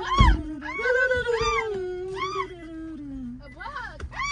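Wordless high falsetto singing: one long note that slowly slides down in pitch, with short arched high notes sung over it about once a second.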